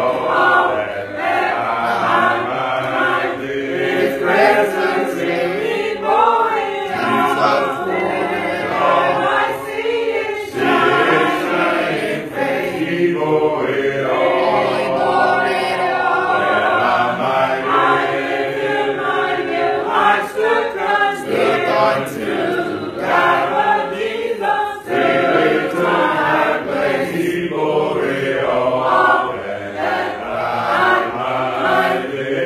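Church congregation singing a hymn without instruments, many voices together in long held lines.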